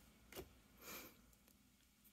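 Near silence with faint handling of trading cards: a soft click about half a second in and a brief swish of a card sliding off the stack around a second in.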